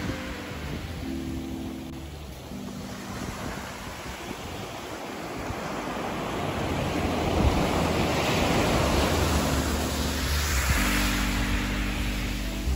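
Small waves breaking and washing up a beach of coarse sand and small pebbles, the surf swelling louder in the second half as a wave runs up the shore. Quiet guitar music plays underneath.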